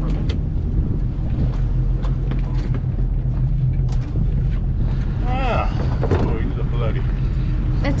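Boat engine running steadily, a low even hum, with a few sharp clicks and knocks on deck, the clearest about four seconds in.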